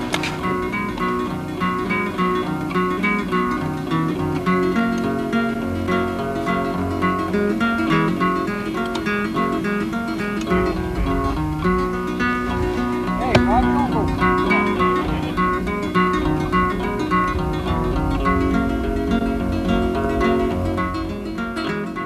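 Instrumental music on acoustic guitar, plucked and strummed in a steady flow of notes.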